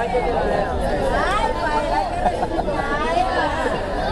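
Indistinct chatter of several people talking over one another, no single clear voice standing out.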